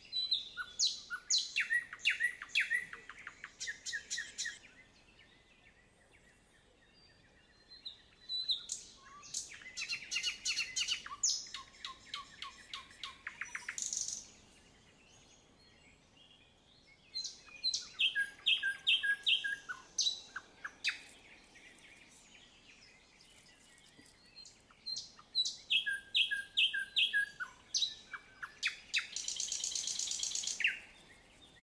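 A songbird singing in phrases of quick, high chirps and trills. Four phrases come, each lasting a few seconds, with pauses of a few seconds between them.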